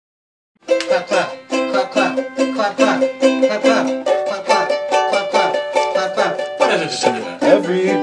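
Music: a small plucked string instrument starts about half a second in and plays quick picked notes.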